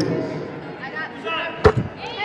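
A basketball strikes once, sharply, about a second and a half in, over low murmur from the gym crowd.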